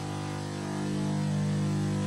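Steady electrical hum made of several fixed low tones, growing slightly louder about halfway through.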